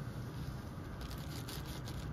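Faint rustling of a clear plastic zip bag and dry milk powder pouring into a disposable plastic cup, with faint crinkles about a second in, over steady low background noise.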